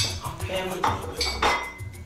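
A plate and a steel cooking pot clattering together: three sharp knocks, the last ringing briefly.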